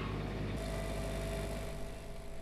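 Steady low hum of an idling vehicle engine. About half a second in, a faint steady higher whine joins it.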